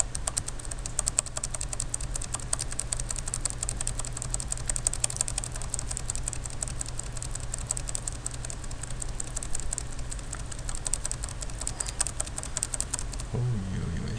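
Computer keyboard keys clicking in a rapid, continuous run while the spreadsheet is moved down through thousands of rows, stopping about a second before the end. A steady low hum runs underneath.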